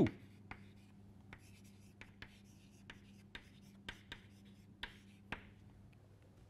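Chalk writing on a blackboard: a run of short, irregular taps and scratches as letters are chalked.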